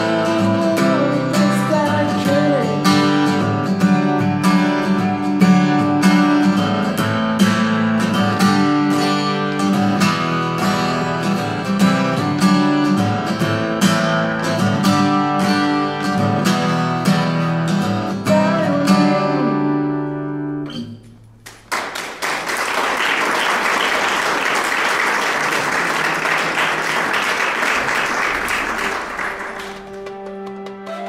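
Steel-string acoustic guitar strummed in a steady rhythm, closing on a final chord that rings out and dies away about twenty seconds in. An audience then applauds for about eight seconds.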